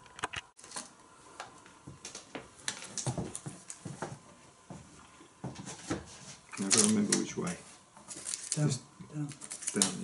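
Scattered small clicks and rustles as a strip of 35mm film is handled and threaded into the gate of a c.1900 Robert W. Paul 'Century' projector mechanism, with low muttered voices in the second half.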